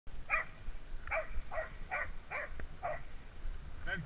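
A dog barking six times in quick succession, over a steady low rumble.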